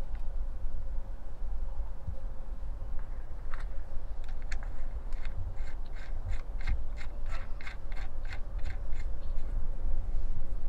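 Hands working the metal terminal hardware on a lead-acid battery post, making short scratchy clicks; from about a third of the way in they come in a quick run, roughly three a second. A steady low rumble lies under it.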